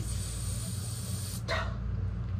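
Steady hiss with a low hum underneath, and one short, sharp sound about one and a half seconds in.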